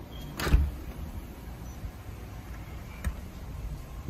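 Front door being shut and locked: a sharp thump about half a second in, then a lighter latch click near three seconds, over a low background rumble.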